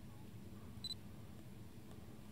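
A single short, high electronic beep from a mirrorless camera about a second in, over faint background hiss.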